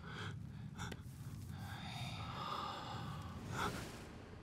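A person breathing out heavily: a long, faint, breathy exhale, with a short sharper breath near the end.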